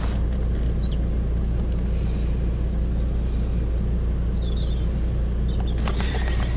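Car engine idling, a steady low rumble heard from inside the cabin, with a few faint high chirps over it.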